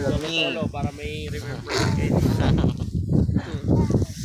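Several people's voices over wind buffeting the phone's microphone.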